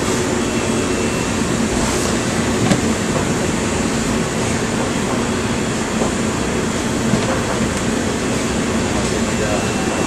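Steady whooshing of kitchen fans and ventilation, an even noise without a rhythm.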